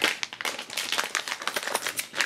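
Scissors snipping across the top of a plastic Lego Minifigures blind bag, with a sharp cut at the start, followed by a run of small crackles and clicks as the packet is handled.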